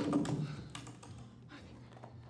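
Quick light clicks and clatter of small objects being handled and rummaged through in an opened box, busiest in the first second and then dying down to a few faint taps.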